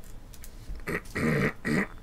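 Two short, low-pitched vocal sounds in the second half, after a quiet first second.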